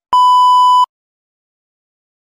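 A TV colour-bars test-tone beep: one steady, loud tone lasting a little under a second, which starts and stops abruptly.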